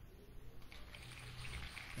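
Quiet room tone: a faint steady low hum under a soft hiss.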